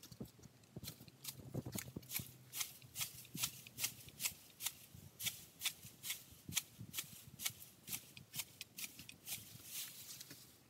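Hand shears snipping through dry grass and sasa stems in a steady run of crisp clicks, about three a second.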